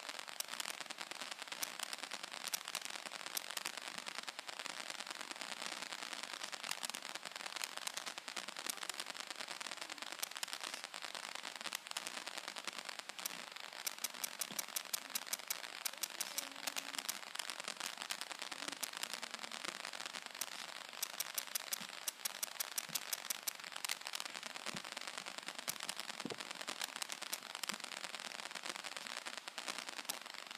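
Continuous dense crackling and rustling, with many sharp clicks coming thick and fast throughout.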